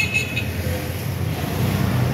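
Steady low rumble of street traffic, with a brief high tone at the start that stops under half a second in.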